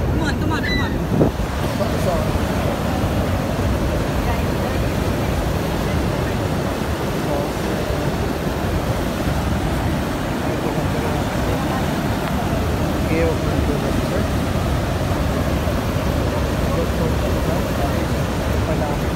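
Steady rush of fast white water: the Niagara River rapids running over the brink of the American Falls.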